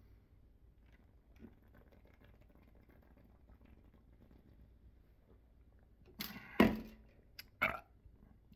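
A man drinking from a plastic shaker bottle: a long, nearly silent stretch of faint swallowing, then a few short, loud breaths or gasps near the end as he comes off the bottle.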